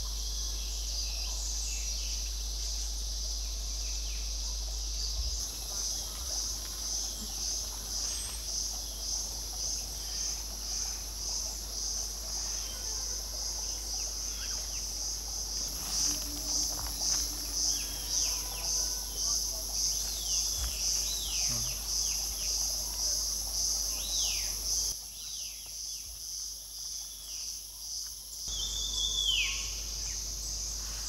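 Cicadas calling in a continuous high shrill that pulses quickly and evenly. Short descending bird calls sound over it, more often in the second half, with a louder one near the end.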